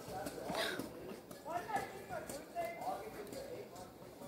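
Soft, mumbled speech over a scatter of light clicks and taps from a hair flat iron, its plates clamping on and sliding along a lock of hair.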